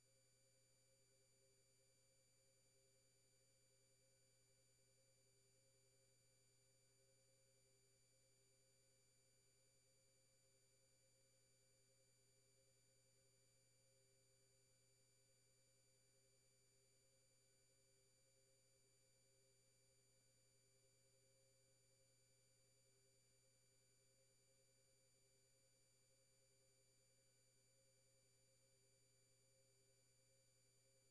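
Near silence: only a faint, steady hum made of a few constant tones, with nothing happening.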